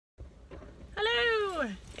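A single drawn-out vocal call about a second in, lasting under a second, rising slightly and then gliding down in pitch, over a steady low rumble.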